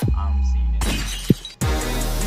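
Electronic background music breaks off its beat into a held deep bass note. A burst of noise with a sharp, shatter-like hit comes about a second in, then the drum beat drops back in about a second and a half in.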